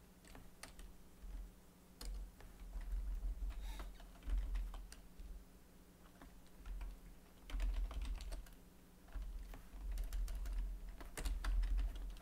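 Computer keyboard typing: irregular bursts of keystroke clicks with short pauses between them, over a faint steady electrical hum.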